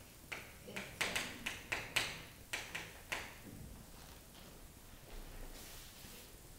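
Chalk on a blackboard while writing a short word: about ten quick taps and scratches in the first three seconds, then quiet room tone.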